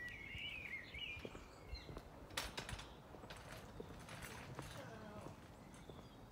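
A small bird singing in the first second or so, then a run of light clicks and knocks in the middle.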